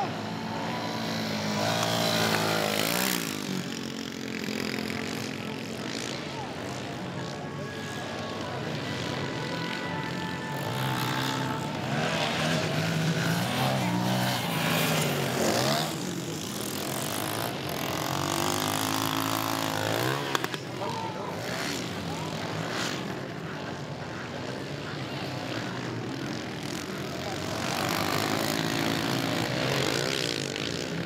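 Several 110cc four-stroke, single-cylinder automatic-clutch youth dirt bikes racing on a motocross track. Their engines rev up and down through jumps and corners, the pitch rising and falling as bikes pass.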